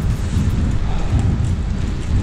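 Steady low rumble of wind buffeting the microphone on a moving bicycle, with tyre and road noise underneath.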